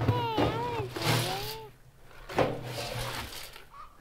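A red plastic scoop digging into dry seed-and-grain chicken feed in a galvanized metal can, the feed rustling and hissing in two bursts. A short high-pitched call rises and falls twice during the first scoop.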